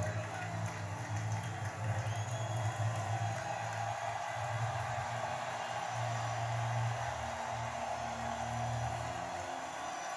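Music with a stadium crowd cheering, heard from a TV broadcast through the television's speaker and picked up by a phone.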